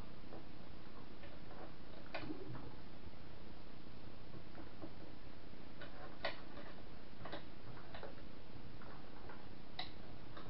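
A few scattered small clicks and taps from hands handling and fitting parts on a 3D printer's frame and print bed, over a steady background hiss.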